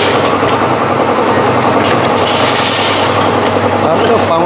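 Automatic pouch-packing machine running, a loud, dense, fast mechanical rattle with a short sharper burst every second or two as it works through its fill-and-seal cycle for macaroni pouches.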